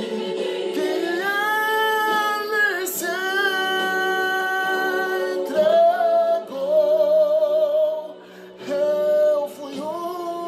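A man singing a gospel ballad in a high, strong voice, holding a run of long wordless notes with vibrato, each a second or two long, with a short break about eight seconds in.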